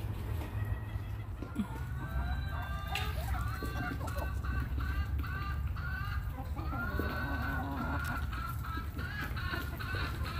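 Backyard chickens clucking: a hen's quick run of repeated calls starts about two seconds in, followed by longer drawn-out calls near the end.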